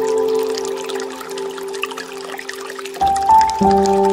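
Slow, soft solo piano playing sustained notes that die away through the middle, with a new chord struck about three seconds in. Underneath, water trickles and pours from a bamboo fountain spout.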